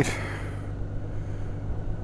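Honda Gold Wing's flat-six engine idling, a steady low hum.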